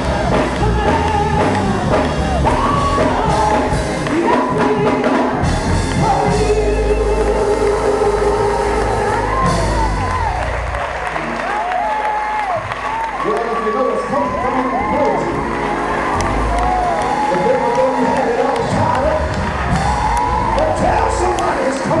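Gospel choir singing with band accompaniment, steady bass underneath, while the congregation cheers and calls out.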